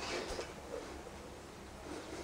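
Quiet room tone: a faint, steady hiss with no distinct sound standing out.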